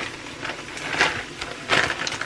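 Frozen chopped spinach being dropped and pushed into a frying pan of onions: rustling, crinkly noise with two sharper bursts, about a second in and near the end.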